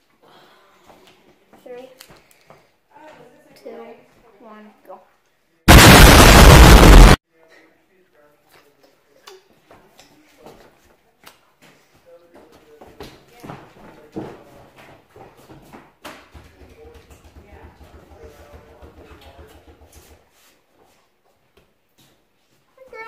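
Faint voices and scattered clicks, broken about six seconds in by a sudden, very loud burst of distorted noise lasting about a second and a half.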